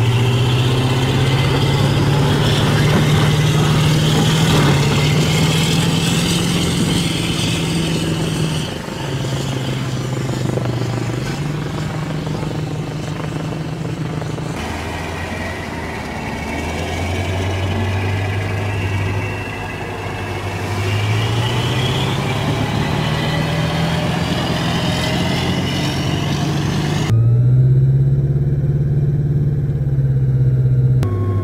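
Assault Amphibious Vehicle diesel engines running under load, their low note stepping up and down in pitch with a thin whine climbing above it. The sound changes abruptly a few times.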